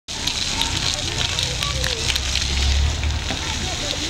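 Ground-level fountain jets spraying and splashing onto wet paving: a steady hiss with crackling spatter.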